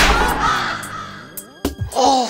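A spooky stinger sound effect: a sudden loud hit, then a long, slowly falling, creaking cry that fades away, over background music. A couple of sharp clicks come near the end.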